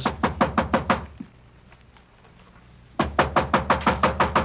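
Impatient knocking on a room door, a radio-drama sound effect: a quick run of about seven knocks, a pause of about two seconds, then another quick run.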